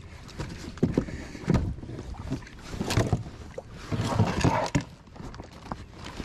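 Irregular knocks, thumps and rustling of gear being handled in a plastic fishing kayak, with a longer, louder rustling stretch about four seconds in.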